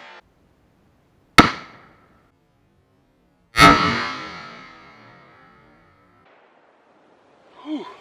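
Two loud reports from a .45-70 Government lever-action rifle firing hot +P 405-grain loads, about two seconds apart, each trailing off in an echo; the second rings on longer.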